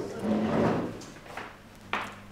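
Muffled handling thumps and rustling, then a sharp click just before the end.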